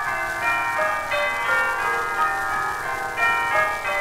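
Opening bars of a 1936 British dance-band fox-trot played from a 78 rpm shellac record: a melody of high, sustained notes with almost no bass beneath it, over faint surface hiss.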